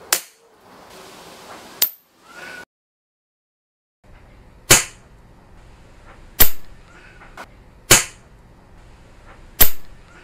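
Shots from a PP700W .22 PCP air rifle: two sharp cracks about a second and a half apart, then after a brief break four more at an even pace of about one every second and a half.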